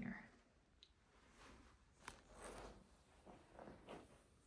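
Near silence: quiet room tone with a few faint, soft clicks and rustles.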